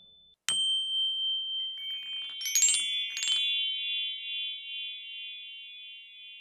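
Closing logo sting of bell-like chimes: a single struck chime about half a second in, then two quick shimmering runs of chimes around two and a half and three seconds in. Several high tones are left ringing and slowly fade out.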